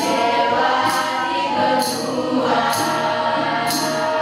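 A group of teenage students, girls and boys, singing together as a choir, with a short sharp percussive hit about once a second keeping the beat.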